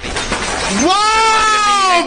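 A man's voice from an edited-in meme clip: one long, drawn-out cry that glides up about halfway in, is held, then falls away near the end.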